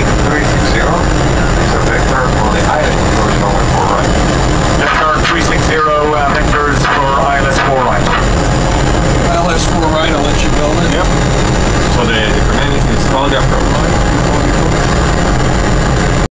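Steady, loud low rumble of Boeing 777 flight-deck background noise, with a faint thin high whine held underneath it.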